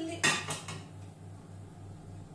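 A ceramic bowl knocking against the rim of a stainless-steel kitchen-robot jug as egg yolks are tipped in: a few quick clinks within the first second.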